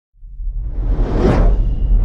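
Logo-intro whoosh sound effect starting a moment in, swelling to a peak a little past a second in over a steady deep bass.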